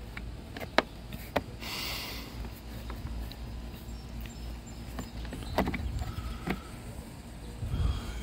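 Plastic roof-rack foot cover being pressed and fitted onto a crossbar foot by hand: a few light plastic clicks, a short scrape about two seconds in, and two more clicks near the middle.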